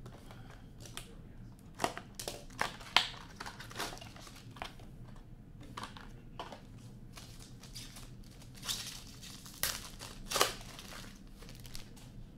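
Plastic wrapping of a sealed trading-card box being torn open and crinkled, in a run of irregular crackles and rips, loudest about three seconds in and again near ten seconds.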